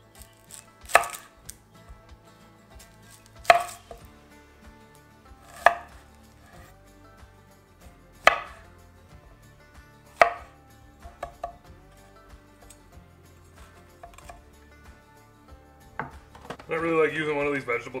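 Chef's knife cutting through an onion and a green bell pepper onto a bamboo cutting board: about five sharp chopping knocks two to three seconds apart, followed by a few lighter taps.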